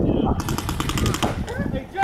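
Paintball markers firing in rapid succession, a fast, evenly spaced string of shots lasting about a second, with a player shouting near the end.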